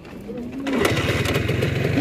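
Motorcycle engine starting less than a second in, then running with a fast, even beat.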